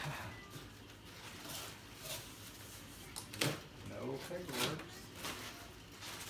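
Plastic wrapping crackling and a cardboard box shifting as a wrapped aluminium cylinder head is handled in its box, in short irregular rustles with a knock at the very start.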